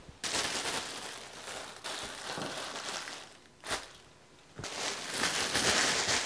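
Plastic sheeting rustling and crinkling in three bouts, with a single sharp click about midway, as a freshly handled clay mug is covered to firm up slowly.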